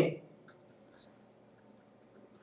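A few faint clicks of a stylus tapping on a writing tablet while handwriting is drawn, after a man's word trails off at the start.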